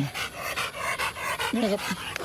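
A Rottweiler panting hard in quick, even breaths, with a man's short spoken phrase near the end.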